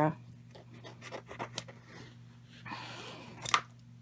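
Scissors cutting the excess margin off a laminated magnet sheet: faint snips early on, then a longer cut about three seconds in that ends in a sharp click.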